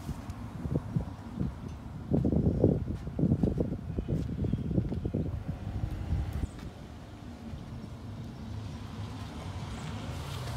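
Low outdoor rumble, most likely wind buffeting the microphone of a handheld camera, gusting strongly for a few seconds before settling into a steadier low drone about two-thirds of the way in, with a faint rumble of distant traffic.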